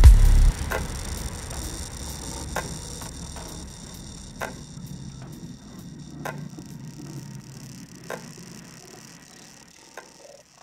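Outro of a psytrance track: the kick drum and bass stop about half a second in, leaving a fading electronic tail with a sharp tick about every two seconds, growing steadily quieter.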